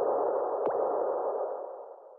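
Electronic logo sting for the CJZ production company ident. Two quick sweeping tones, the second about two-thirds of a second in, sit over a sustained, hissy synthesised tone that fades away near the end.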